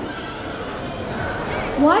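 Faint, indistinct voices echoing in a large hall, then a woman's voice over a microphone cutting in with a rising pitch near the end.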